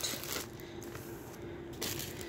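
Faint crinkling of a plastic Ziploc bag being handled, at the start and again briefly near the end, over a faint steady hum.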